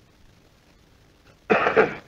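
Faint hiss of an old recording, then a sudden loud, short vocal sound from a man about a second and a half in, lasting about half a second, like a throat clearing or a brief call.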